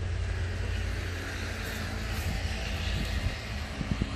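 Road traffic from motorbikes and cars on a highway: a steady rumble that swells in the middle, as a vehicle passes, over a heavy low rumble.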